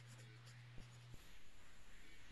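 Near silence: faint room tone through an open webinar microphone, with a steady low hum and a few soft clicks or rustles.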